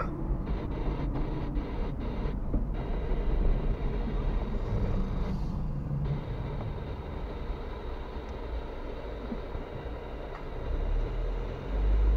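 Steady low rumble of a car's engine and tyres, heard from inside the cabin as the car slows into queued traffic. The rumble swells louder near the end.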